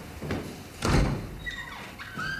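A door being handled: one heavy thud about a second in, then a short high squeak.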